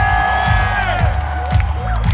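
Live rock concert heard from within the audience: a singer glides up into a long high held note, which ends near the end, over a kick drum beating about twice a second. The crowd cheers underneath.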